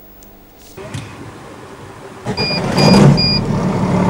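Street-sweeper truck engine running, heard from the cab, growing much louder a little over two seconds in. Over it come three short, high electronic beeps about half a second apart.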